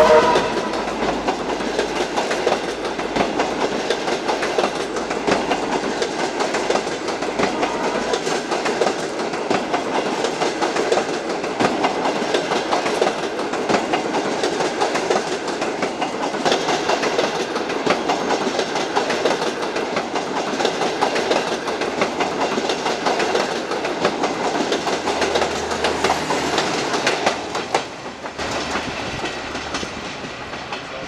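Passenger coaches of a long-distance train rolling past close by, wheels clacking steadily over the rail joints. The sound drops off near the end as the last coach passes and the train moves away.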